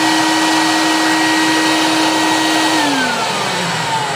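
Vacuum cleaner running as it sucks up loosened rust dust and debris from a car's wheel well, with a steady whine over the rush of air. About three-quarters of the way in the whine starts to fall in pitch as the motor slows down.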